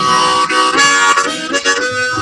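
Harmonica held in a neck rack, played loudly in chords that change several times.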